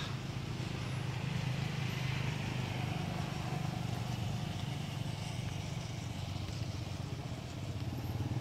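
An engine running steadily at a constant speed, a low even hum.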